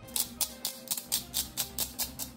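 Salt and pepper shakers being shaken over a slow cooker: an even rattle of about four to five shakes a second. Quiet background music plays underneath.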